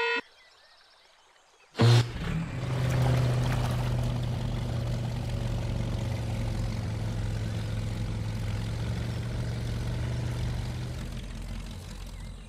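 Cartoon jeep engine sound effect: it comes in suddenly about two seconds in, then holds a steady low drone that fades toward the end.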